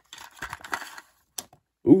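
Small plastic LEGO minifigure parts clicking against each other and the cardboard as fingers pick through an opened blind box, with light cardboard rustling, then one sharper click. A voice starts right at the end.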